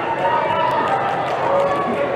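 Many young players' voices shouting and calling over one another on an indoor football pitch in the moments after a goal.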